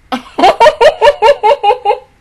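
A woman laughing hard, a quick run of about eight loud, pitched "ha" pulses, about five a second, that stops abruptly at the end.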